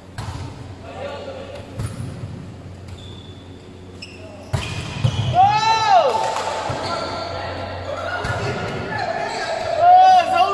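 Volleyball being struck by hands in an echoing sports hall, a few sharp smacks. Players shout loudly: one long yell rising and falling in pitch about halfway through, calling that carries on, and another loud shout near the end.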